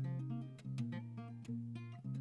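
Tanglewood TSF-CE Evolution acoustic guitar with a partial capo, played fingerstyle: a melody of single plucked notes over a ringing low bass note, with fresh attacks about half a second in, near the middle and again at the end.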